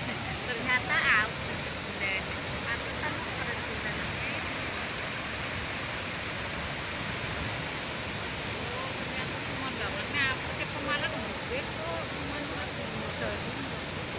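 Steady rush of a tall waterfall, several streams falling into a plunge pool. Brief snatches of voices sound about a second in and again around ten seconds in.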